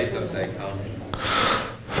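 A group of voices reading a psalm verse aloud together, faint and off-microphone, then a sharp intake of breath close to the microphone in the last second, just before the reader speaks.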